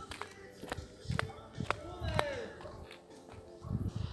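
Footsteps of a person walking on a paved platform: a few soft thuds with light clicks between them.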